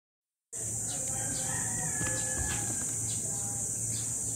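A rooster crowing faintly once, a drawn-out crow beginning about a second in, over a steady high hiss.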